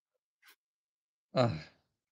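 A man's single sighing "oh" about a second and a half in, fading as it trails off. Before it there is near silence.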